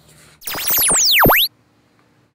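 Synthesized electronic sound effect about a second long: a cluster of tones sweeping down and up in pitch, starting about half a second in and cutting off suddenly. It is the robot's computer sound as it carries out a command.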